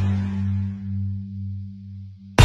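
Music: a low held bass note from a song's intro ringing on and slowly fading, its loudness swelling and dipping, before the beat comes in.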